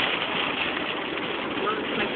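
Steady rain hitting a car's windshield and roof, mixed with tyre noise on the wet road, heard from inside the moving car.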